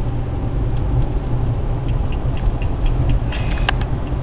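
Steady low rumble of road and engine noise inside a car cabin at highway speed. A few faint ticks and one sharp click near the end sound over it.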